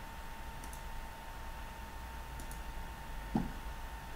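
Faint computer mouse clicks, one a little under a second in and another about two and a half seconds in, over a steady low electrical hum with a thin steady tone. A short soft thump comes a little after three seconds in.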